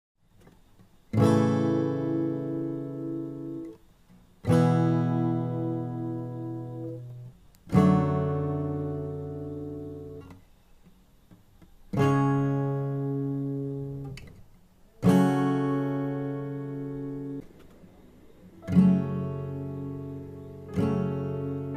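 Steel-string acoustic guitar with a capo: six single strummed chords, one about every three seconds, each left to ring out and fade before the next.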